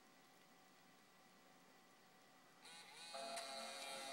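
Near silence, then about two and a half seconds in the MacBook Pro's startup chime sounds, a held chord: the laptop is rebooting and has reached power-on.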